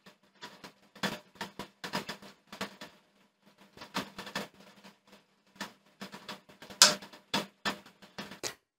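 Bobbin winder of an industrial bartack sewing machine running: a faint steady hum under irregular light clicks and rattles, with a few louder clicks near the end.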